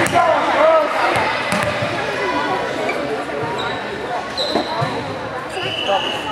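Volleyball bounced a few times on a hardwood gym floor over gym chatter, with a short high whistle blast near the end, typical of the referee signalling the serve.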